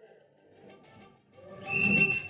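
Mostly quiet, then a swell of muffled noise with a short, steady high whistle held for about half a second near the end.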